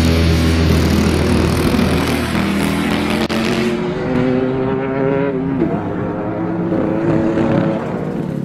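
Racing kart engines running on the track, mixed with background music. The sound turns duller about halfway through.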